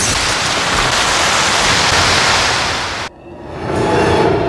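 Cartoon sound effect of swirling sand: a loud, steady rushing hiss that cuts off suddenly about three seconds in, after which a quieter sound swells up.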